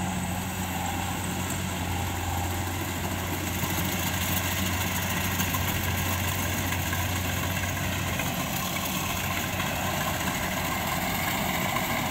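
Rice combine harvester running as it cuts paddy: a steady engine drone with a low hum, under an even wash of machine noise.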